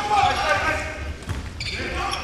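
Court sound of a basketball game in a gym: a basketball bouncing on the hardwood floor under scattered voices of players and spectators.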